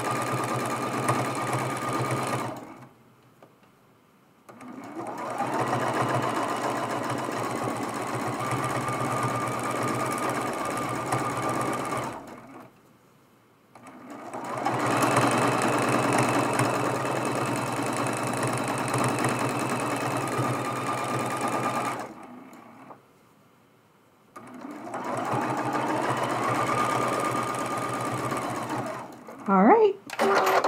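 Sit-down domestic sewing machine running for free-motion quilting, in four stretches of several seconds each with a steady hum. It stops briefly three times in between as the quilter pauses to reposition the fabric.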